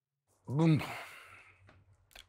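A man's sigh: a short voiced sound about half a second in, trailing off into a breath out that fades over about a second.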